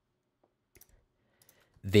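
A few faint, light clicks of computer input, scattered over a second or so, as a new .env file is made in a code editor's file explorer; a man's voice starts near the end.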